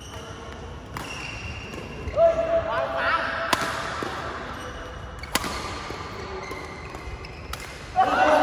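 Badminton rackets striking a shuttlecock during a rally: four sharp cracks about two seconds apart. Rubber-soled court shoes squeak briefly on the floor between shots, loudest a couple of seconds in.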